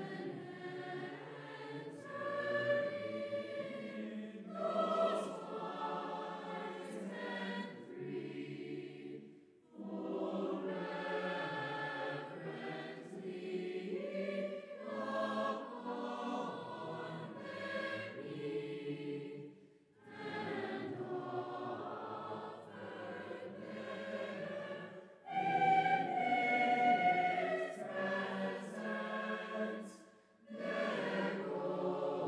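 Choir singing in long phrases of about ten seconds each, with a brief pause for breath between them.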